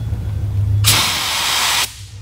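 SATA Jet 100 B RP HVLP spray gun test-spraying water at 28 PSI with the fan and fluid control wide open: a hiss of air about a second long that starts a little under a second in and cuts off suddenly when the trigger is released. A steady low hum runs underneath.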